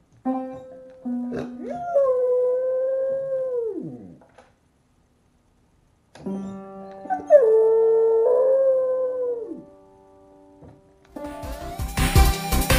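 A beagle paws at piano keys, sounding clusters of held notes, and howls along: two long howls, each rising at the start and sliding down at the end. Near the end, loud music with a beat comes in.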